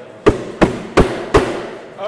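Four sharp raps in quick, even succession, about three a second.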